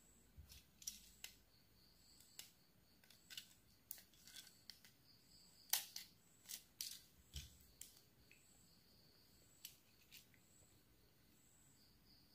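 Faint, irregular small clicks and snaps of plastic parts as a battery quartz clock movement is handled and taken apart by hand.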